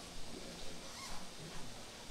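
Quiet room tone: a low, even background hiss with a few faint small clicks and rustles.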